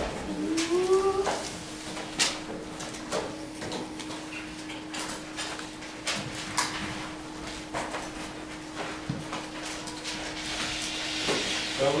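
Classroom room noise during silent desk work: scattered small clicks and knocks of desks, chairs and paper handling, over a steady hum. A brief rising squeak sounds in the first second.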